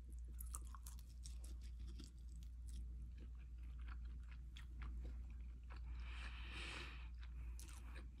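A person chewing and biting on a glazed chicken wing: a faint, irregular string of small wet clicks and crunches, with a brief breathy hiss about six seconds in.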